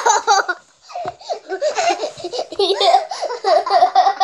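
Young girls laughing, with a brief pause about a second in and quick repeated bursts of laughter later on.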